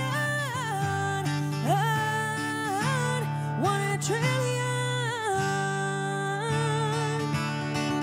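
A woman singing live with long held and sliding notes over her own strummed acoustic guitar.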